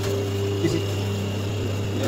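Steady electric hum of a hydraulic paper plate making machine's motor and pump running, with a light knock about half a second in as the die is handled.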